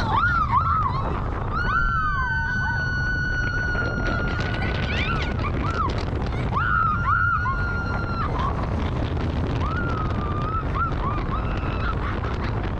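Two women screaming on a rollercoaster: a long, high, held scream about a second and a half in, another a few seconds later, and shorter rising and falling yelps after that, over the steady low rumble of the moving ride.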